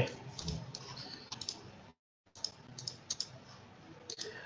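Light clicking at a computer keyboard and mouse, in two short runs of scattered clicks with a brief dropout to silence between them.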